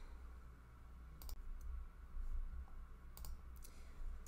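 Two faint computer clicks about two seconds apart, over a low steady hum: the clicks of advancing a presentation slide.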